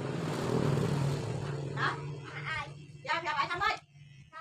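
People talking in the background, over a steady low hum, with a swell of rushing noise in the first second and a half.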